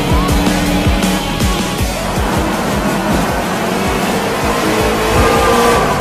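Music with a steady drum beat mixed over a car engine, which revs up with a rising pitch just after the start and again near the end.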